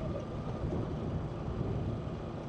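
Motorcycle engine running low and steady as the bike rolls slowly along the road.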